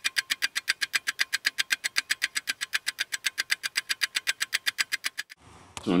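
A rapid, perfectly even ticking, about eight ticks a second, that stops about five seconds in.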